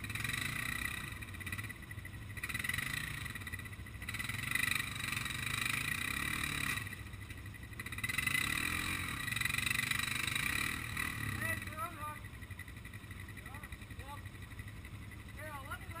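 ATV engine revving in repeated rising-and-falling surges, four or so over the first eleven seconds, as a quad bogged in deep mud tries to drive out. After that it goes quieter, with faint distant shouting.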